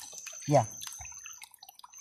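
Hands pulling small mostacilla plants out of waterlogged marshy ground, with small wet crackles and drips as the stems and roots come free. A steady high-pitched tone runs underneath.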